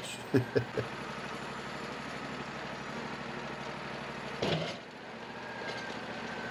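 Wood-Mizer LT40 sawmill's engine idling steadily, with a brief louder sound about four and a half seconds in.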